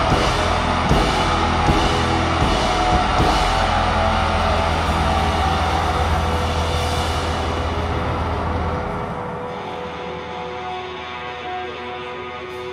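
Rock band playing live with drum kit, cymbal crashes, bass and electric guitars. About nine seconds in, the drums and bass stop and only held guitar notes are left ringing, the close of a song.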